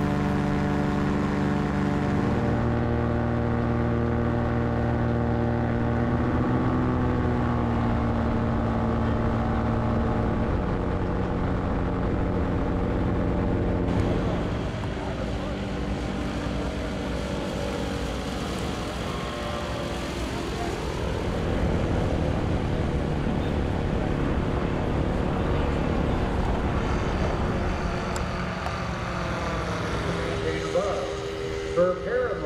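Aerolite 103 ultralight's engine and propeller droning steadily, heard from the cockpit. About halfway through it is heard from the ground as the ultralight flies past, its pitch shifting as it goes by.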